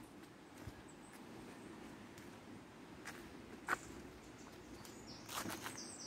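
Quiet footsteps and rustling through woodland undergrowth, with two short cracks a little past halfway.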